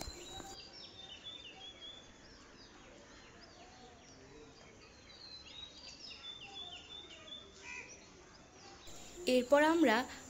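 Faint chirping of small birds in the background: many short, high chirps scattered through an otherwise quiet stretch.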